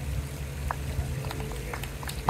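Scattered claps from a small outdoor audience, a few sharp claps starting about a third of the way in, as the song ends. Underneath is a low, steady hum of city traffic.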